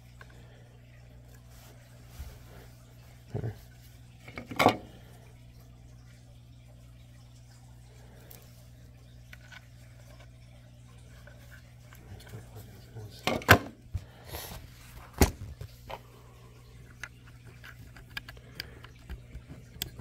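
Small clicks and knocks of clipper parts being handled and pressed into place. A few sharp ones come about three and five seconds in, and a cluster comes a little past halfway, over a steady low hum.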